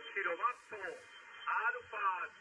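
A man's voice received on a Kenwood HF transceiver over a 20-metre single-sideband contact. It sounds narrow and thin, cut off above the voice band, with faint band hiss behind it.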